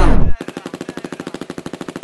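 The trap beat drops away with a falling pitch slide at the start, then a rapid, evenly spaced rattle of machine-gun fire sound effect takes over, quieter than the music.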